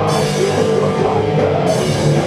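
Live metallic hardcore band playing: distorted guitars and drum kit, loud and dense, with cymbals crashing at the start and again near the end.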